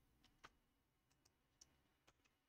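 Near silence broken by about four faint, sharp clicks, keystrokes on a computer keyboard.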